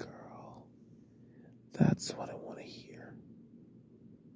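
A man whispering close to the microphone, with a sudden loud burst about two seconds in.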